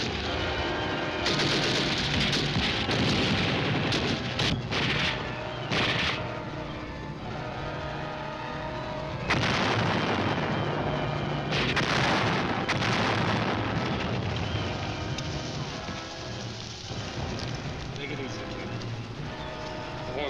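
Battle sound effects: repeated rifle and automatic-weapon fire with heavy shell explosions, the loudest blasts coming about a second in and again around the middle. A music score runs underneath.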